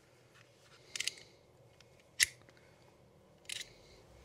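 Stanley FatMax retractable utility knife having its blade changed: three short metallic clicks as the blade carrier is slid and a new blade is seated. The sharpest click comes a little past halfway.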